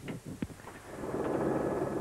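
A few short clicks and knocks inside the cabin of the stalled Peugeot 307 WRC, whose engine will not restart after the crash. From about a second in, a steady rumbling noise builds up.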